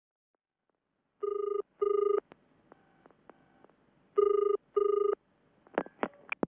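Telephone ringing in the British double ring: two ring-rings about three seconds apart, then a click near the end as it is picked up.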